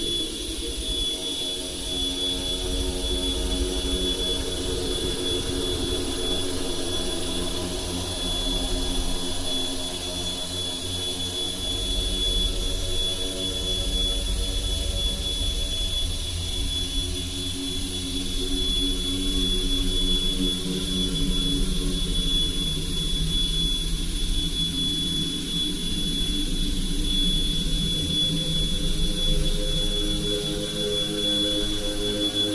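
Experimental electronic drone music: a steady low rumble under a cluster of held tones that shift slowly, with a thin high whine held throughout.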